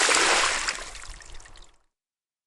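A splash of water thrown over someone lying in bed: loudest at once, then dying away over about a second and a half.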